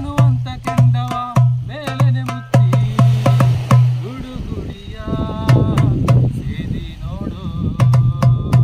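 Darbuka played by hand: deep ringing bass strokes and sharp high slaps in a quick rhythm, with a short break in the bass strokes about four seconds in. A man sings along.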